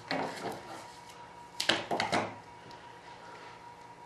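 Paper backing being peeled off sealant (tacky) tape while plastic vacuum-bag film is handled: soft rustling, with a brief cluster of sharp crackles about halfway through.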